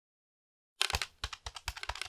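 Computer keyboard typing: a rapid, uneven run of key clicks and clacks starting a little under a second in.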